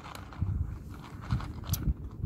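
Dry penne pasta rattling faintly in a plastic tub as a hand picks pieces out, with a couple of light clicks over a low rumble.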